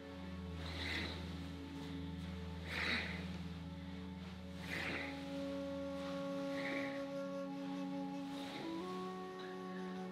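Soft background music of held, sustained tones, with faint soft sounds about every two seconds and a change of chord near the end.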